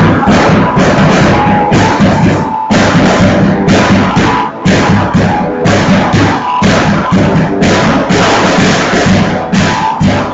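Live rock jam on a drum kit and electric guitar, played loud: bass drum and snare under a cymbal struck roughly every second, with held guitar notes over the top.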